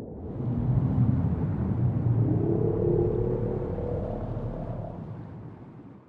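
Underwater recording of humpback whale song: low calls with a slightly rising pitch over rumbling underwater noise, swelling about a second in and fading out near the end.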